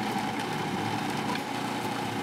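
Food processor motor running steadily at an even pitch, its blade chopping brown and shiitake mushrooms.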